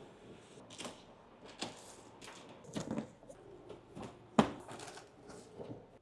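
A knife slitting packing tape along a cardboard box, then cardboard flaps rustling and scraping as the box is opened, in irregular crackles and scrapes with one sharp snap about two-thirds of the way in.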